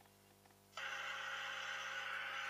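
A YouTube video's audio playing through an iPod's small built-in speaker. After near silence, about three-quarters of a second in, a steady, hissy wash of sound cuts in abruptly.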